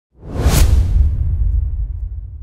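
Cinematic intro sound effect: a sharp whoosh about half a second in, trailing into a deep low rumble that slowly fades out.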